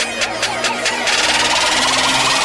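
Electronic intro music: a rapid beat of about five hits a second, then about a second in a bright hissing sweep rises and builds, a riser leading into the drop.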